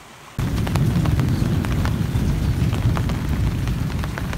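Heavy rain pouring, with a dense low rush and many sharp drop hits close to the microphone. It starts abruptly about half a second in, after a short quieter stretch.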